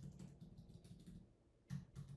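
Computer keyboard being typed on: a quick run of faint key clicks, a short pause, then a couple more keystrokes near the end.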